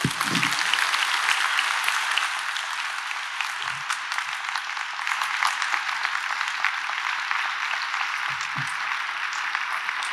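Large audience applauding, with many hands clapping into a dense, even patter that is loudest at the start and eases a little toward the end.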